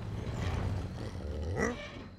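Deep, rumbling monster-like roar from a giant animated construction machine, with a short rising-and-falling cry near the end.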